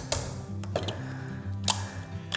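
Background music with steady held low notes, over which a knife strikes lobster shell on a cutting board three times: near the start, a little under a second in, and near the end.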